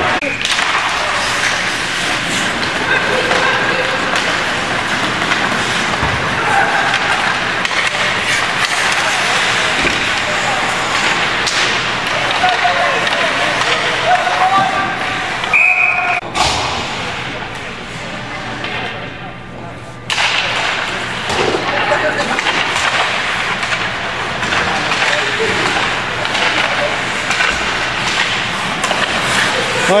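Ice hockey rink sound: spectators' voices mixed with skating, stick and puck noise and occasional thuds. About halfway through there is a brief high whistle blast from the referee.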